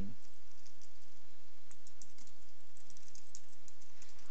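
Typing on a computer keyboard: a quick run of key clicks, thickest in the second half, over a steady low hum.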